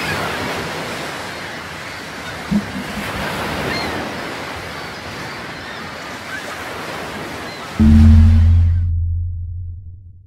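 Sound design under an animated logo: a steady rush of ocean-surf noise, then a loud, deep low tone comes in about eight seconds in and fades away.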